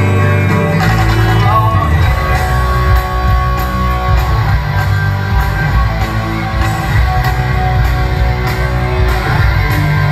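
A rock band playing live through a concert PA: electric guitars, bass and drums with a lead singer, heard from the crowd.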